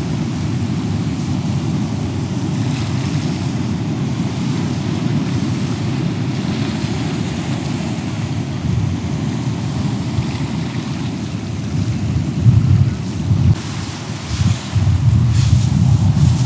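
Sea waves breaking and washing over a rocky shore in a strong wind, with wind buffeting the microphone as a steady low rumble. The gusts come harder near the end.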